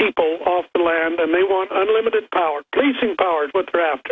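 A man speaking over a telephone line, the sound narrow and thin, with no other sound to be heard.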